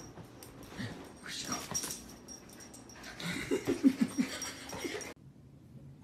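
A dog giving a quick string of short, high cries that bend in pitch, amid a rustling noise, loudest a little after the middle and cut off abruptly about five seconds in.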